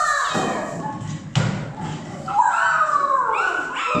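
A child's voice in a long falling cry, with a sharp thump about a second and a half in.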